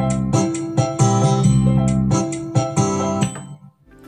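Yamaha PSR-SX600 arranger keyboard playing a dangdut style pattern with its bass and chord parts while a clean electric guitar part is recorded over it in Style Creator. The music stops suddenly about three and a half seconds in, as the recording pass ends.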